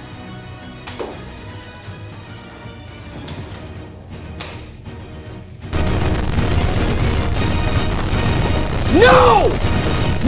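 Quiet background music with a single sharp crack about a second in, then a sudden loud, distorted meme sound effect cutting in about halfway through, with a shouted "No!" near the end.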